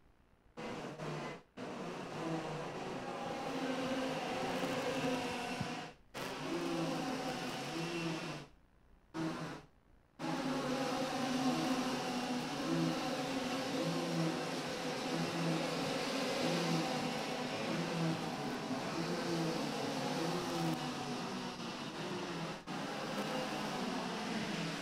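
Several IAME X30 125 cc two-stroke kart engines running at race pace, their engine notes swelling and fading as the karts go through the corners. The sound drops out briefly a few times, longest for about a second and a half near the middle.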